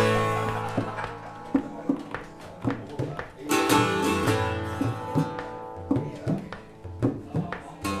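Instrumental opening played on a bowl-backed, bouzouki-style plucked string instrument, with strummed chords ringing on. Tabla strikes with bending low notes sound beneath it.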